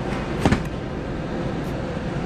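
A short double knock, about half a second in, as cardboard pizza boxes are pulled out of a heated pickup-locker compartment, over a steady background hum.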